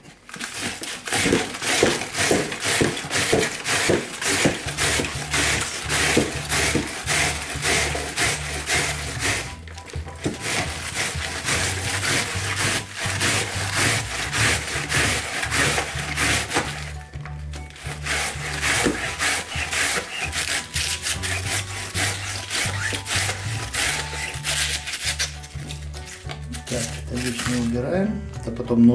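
Cabbage being rubbed back and forth over the steel blades of a wooden multi-blade cabbage shredder, a fast run of rasping strokes with short breaks about ten and seventeen seconds in. Background music with a bass line plays under it from about five seconds in.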